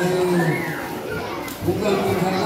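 Speech: a voice talking with children's voices around it.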